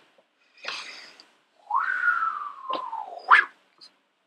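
A man's high-pitched, drawn-out whimper that jumps up and then falls slowly in pitch, after a short breathy puff. Two sharp mouth clicks come near the end, the second the loudest sound.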